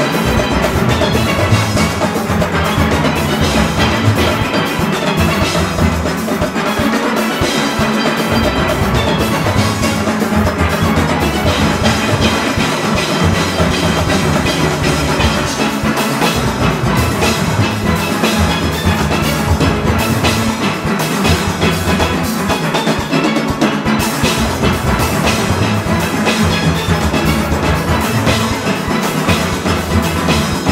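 A large steel orchestra of steelpans playing a Panorama arrangement at full performance tempo. A drum kit, congas and cymbals keep a driving beat underneath.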